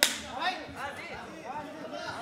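A single sharp crack right at the start, followed by men's voices shouting and a laugh near the end.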